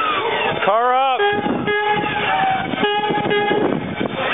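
A single-note horn sounds two steady blasts, the first just over a second long and the second shorter, just after a brief rising-and-falling whoop.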